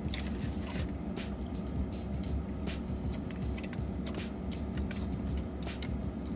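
Steady low hum inside a parked car, with scattered small clicks and taps from eating a soft pretzel and dipping it into a plastic cup of cheese sauce.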